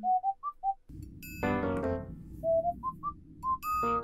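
Background music: a melody of short, pure whistled notes, each with a slight upward flick, over soft accompaniment, with a fuller chord about a second and a half in.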